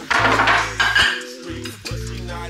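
Ceramic dishes clattering and clinking together as they are handled and stacked, loudest in the first second, over background hip hop music with a steady bass line.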